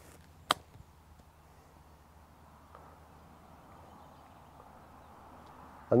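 Golf six iron striking a ball off a fairway grass lie for a low running shot: one sharp click about half a second in. Faint outdoor background hiss follows.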